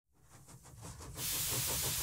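Steam hiss sound effect: a fast, even pulsing of about eight beats a second fades in from silence, then a steady hiss comes in suddenly just after a second in.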